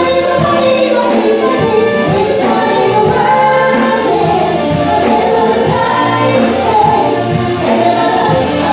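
Live amplified pop band: two women singing together over electric bass guitar, keyboard and a drum kit keeping a steady beat.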